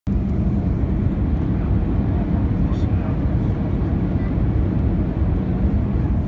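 Steady low rumble of engine and airflow noise inside an Airbus A320 cabin over the wing, on the final approach to landing.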